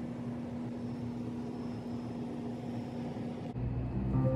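A steady mechanical hum, one constant low tone over an even noise, like a motor or fan running in the room. Near the end it cuts abruptly to a deeper rumble.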